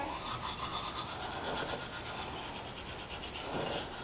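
Manual toothbrush scrubbing teeth in quick, even back-and-forth strokes, several a second.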